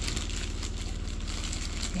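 Crinkly rustling handling noise, like packaging or the phone being rubbed, over a steady low hum from a machine running in the background.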